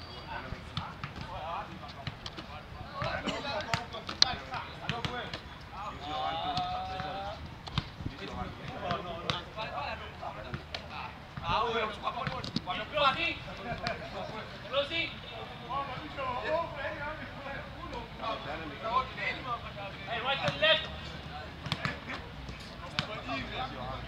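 Voices of footballers and coaches calling out during a training drill, with no clear words, mixed with scattered short thuds and knocks.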